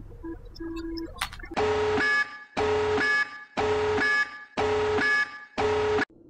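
Electronic alarm beeps counting down: five long, steady multi-tone beeps, one about every second, starting about a second and a half in, after a few faint short blips.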